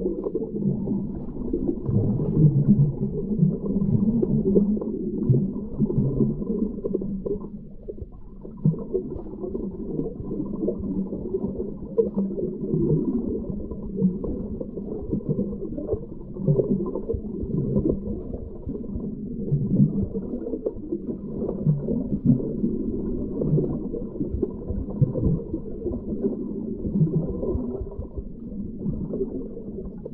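Muffled underwater sound of a river's current flowing over a rocky bed, picked up by a camera held under the water: an uneven, dull rumbling and gurgling.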